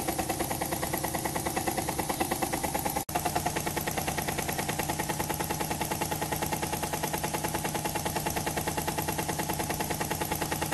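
Homemade compressed-air-driven model steam engine made from a KLG spark plug, running with twin flywheels: a rapid, even chuffing of exhaust puffs at a steady speed, with a brief dropout about three seconds in.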